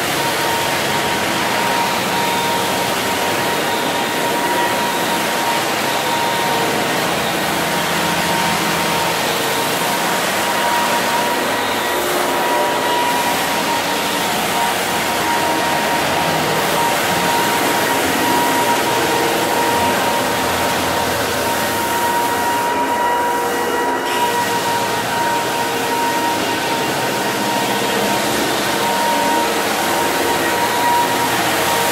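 Electric floor sanding machine running steadily on wooden parquet, a continuous grinding noise with a constant high whine from its motor.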